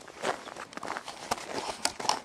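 Footsteps crunching in snow, about two steps a second, with a couple of sharper clicks among them.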